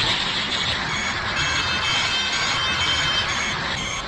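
Soundtrack sound effect of a steady rushing noise, like an anime energy aura, with faint music tones coming in about a second in.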